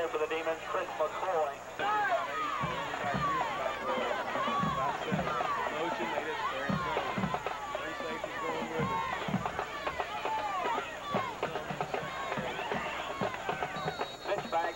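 Football crowd in the stands: many voices shouting and calling at once, overlapping without a break.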